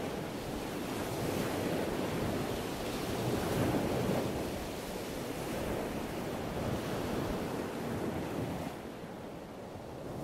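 Ocean surf sound, waves washing in and out as a steady wash that swells a few seconds in and ebbs near the end.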